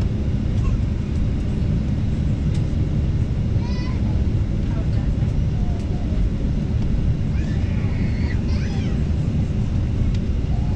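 Airliner cabin noise: a steady low rumble of engines and airflow, with faint passenger voices now and then, clearest around four seconds in and toward the end.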